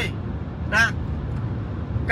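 Steady low rumble of a car's interior, with a man's voice giving one short syllable a little under a second in.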